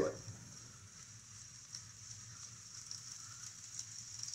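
Faint, steady sound of a Piscifun Alijoz 400 baitcasting reel being cranked, winding 50 lb braid onto its spool from a line spooler, with a couple of light clicks.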